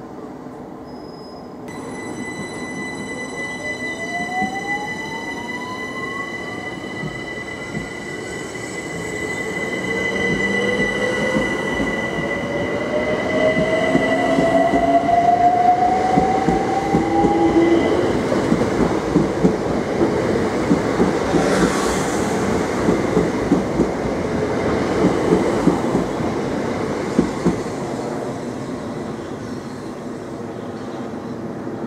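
Southeastern Class 376 Electrostar electric train pulling away from the platform: its traction motors whine, rising steadily in pitch as it accelerates, over a steady high tone. Later comes a rhythmic clatter of the wheels over the rail joints as the coaches roll past.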